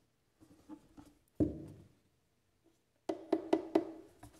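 Hard cardboard box set being knocked and handled: one dull thump about a second and a half in, then a quick run of about five sharp taps near the end.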